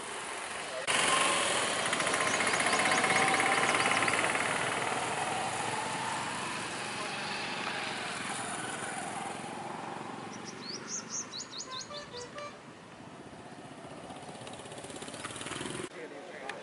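Outdoor field noise: a rushing sound that starts abruptly about a second in and slowly fades, with a bird giving a quick run of rising chirps about eleven seconds in.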